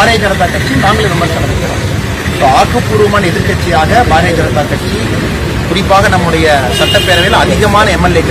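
A man speaking at a street press briefing, with a steady hum of road traffic behind his voice.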